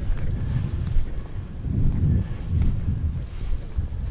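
Wind buffeting the microphone in uneven gusts, with dry grass rustling as the person carrying the camera walks through the field.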